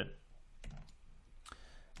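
Two faint clicks from a computer mouse, a little under a second apart, over low room hiss.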